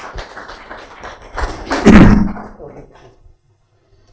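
Microphone handling noise: a run of light taps and knocks, then a loud, heavy thud with rustling about two seconds in, as the microphone is fitted or adjusted.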